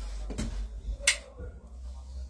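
A single sharp click about a second in, from a lighter being struck to set alcohol on a towel across a patient's back alight for fire treatment. A low hum runs underneath.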